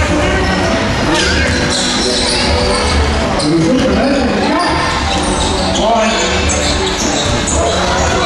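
Live basketball game in a gym: a ball being dribbled on the hardwood court, sneakers squeaking, and players' and spectators' voices echoing through the hall.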